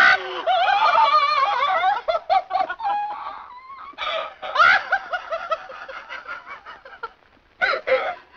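A woman laughing in shaky, high-pitched peals that break into gasping sobs, with a sharp sob just before the end.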